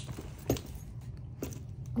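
Three light knocks and clicks as a leather handbag and its metal hardware and charm chain are handled and tilted, over a low steady hum.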